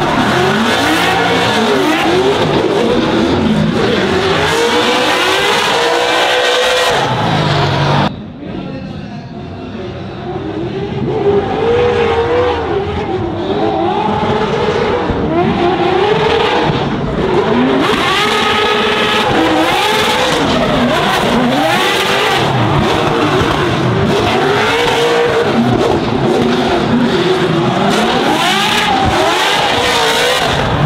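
Drift cars, a Nissan 240SX among them, sliding in a tandem battle: engines revving up and down hard with tyres squealing. About eight seconds in the sound drops and turns duller for a few seconds, then picks back up.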